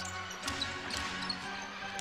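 A basketball being dribbled on a hardwood court, a few faint bounces about half a second apart, over arena music with long held notes.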